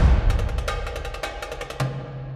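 Background music with a quick run of percussion hits that fades down, and a low bass note coming in near the end.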